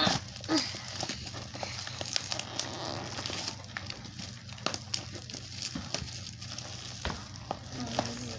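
Plastic courier mailer bag crinkling and crackling in irregular small clicks as it is pulled and picked at by hand, trying to get it open.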